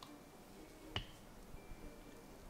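A single sharp click about a second in, with a brief high ring, against a quiet background.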